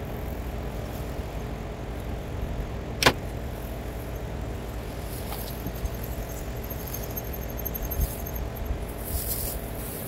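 A star diagonal being taken off a small refractor telescope so the eyepiece can go straight in: one sharp click about three seconds in and a few small handling ticks, over a steady low outdoor rumble.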